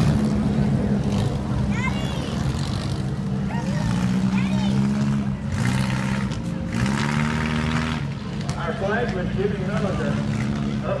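Several stock car engines running together as the pack circles the track at low speed, a steady drone that rises in pitch a few times as cars pick up speed.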